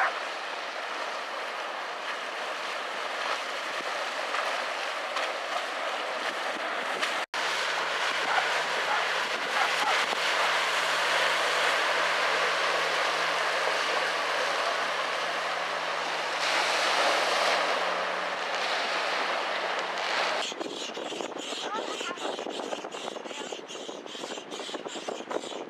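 Motorboat engines on the water with the hiss of spray: an outboard-powered rigid inflatable boat running for the first several seconds, then a jet ski holding a steady engine note as it rides past, loudest a few seconds before the sound changes near the end.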